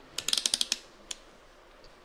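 Rotary selector dial of a digital multimeter being turned, its detents clicking in a quick run of about eight clicks, then one more click about a second in.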